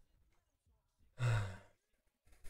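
A man sighs once, a short breathy exhale that begins a little past a second in and fades out over about half a second.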